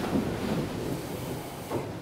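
Shuffling and rustling of a congregation standing up in wooden pews and settling for prayer, a low, even noise of movement that fades toward the end.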